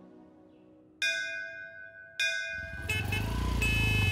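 A temple bell struck twice, about a second apart, each strike ringing out and fading. From about two and a half seconds in, busy street noise with a low traffic rumble comes in.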